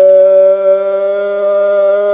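A boy's voice holding one long, steady sung or hummed note at an unchanging pitch.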